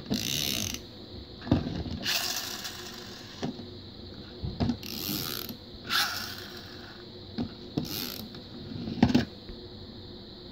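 Pullback spring motors of die-cast toy ambulances whirring and ratcheting as the cars are pulled back and released, in several short bursts.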